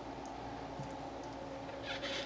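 Faint mouth clicks of chewing and food handling over a steady low background hum.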